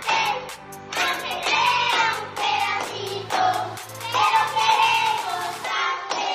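Children singing to music with a steady beat.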